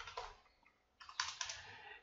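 Faint typing on a computer keyboard: a couple of keystrokes at the start, then a quick run of keystrokes in the second half.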